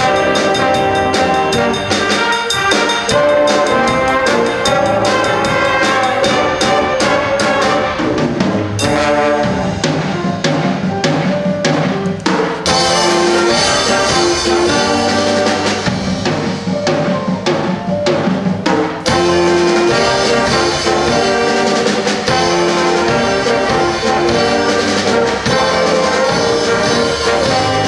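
High school stage band playing live: brass and saxophones over a drum kit. About a third of the way in comes a run of sharp, accented hits before the full band carries on.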